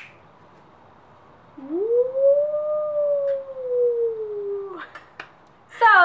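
A woman's voice holding one long "ooo", swooping up in pitch and then gliding slowly down, lasting about three seconds and starting about one and a half seconds in.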